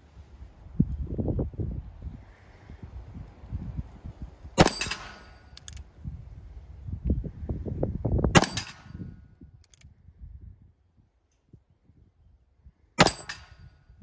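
Three shots from a single-action revolver chambered in .45 Colt, about four seconds apart, the hammer thumb-cocked for each shot.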